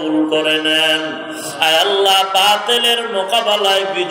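A man's voice chanting a supplication prayer (munajat) in long, drawn-out melodic phrases into microphones.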